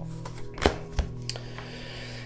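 Soft ambient background music with steady held tones, with two sharp light clicks about half a second and a second in from tarot cards being handled and turned over.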